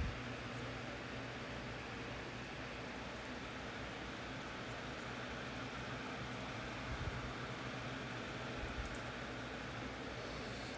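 Steady background hiss with a low hum: room noise, with a faint soft sound about seven seconds in and another near nine seconds in.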